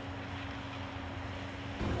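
Steady engine drone of a heavy wheeled soil-stabilising machine working a roadbed, with a held hum that cuts off shortly before the end.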